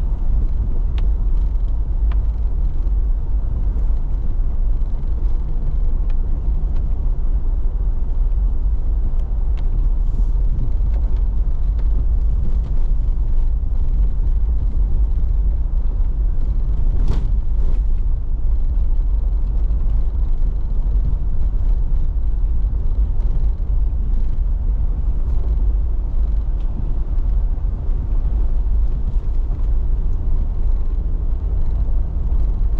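Cabin noise of a vehicle driving slowly on a dirt forest road: a steady low rumble of engine and tyres, with scattered small ticks and one sharper knock about seventeen seconds in.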